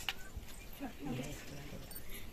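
Faint speech: a short murmured phrase from one voice about a second in, over quiet room background, with a single sharp click at the very start.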